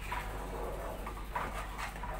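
Wooden spatula stirring thick mango pulp as it cooks in a nonstick pan, with a few short squeaky scrapes against the pan over a low steady hum.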